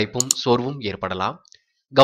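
A few quick mouse-click sound effects from a subscribe-button animation in the first half second, over a voice narrating in Tamil that pauses briefly about a second and a half in.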